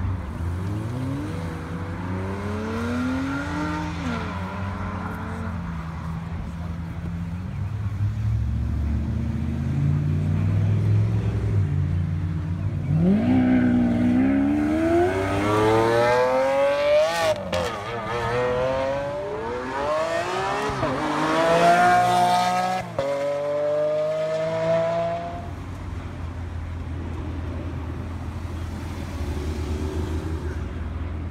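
Lamborghini Aventador SV's V12 revving: a few light blips, then about halfway through a hard acceleration through the gears, the pitch climbing with a sharp break at each upshift. A final climbing pull fades as the car moves away.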